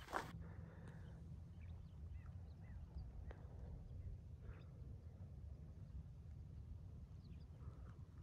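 Faint outdoor morning ambience: a low steady rumble with scattered short, faint bird chirps.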